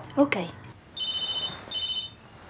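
Telephone ringing: two short, high electronic rings, the first about a second in and the second near the end.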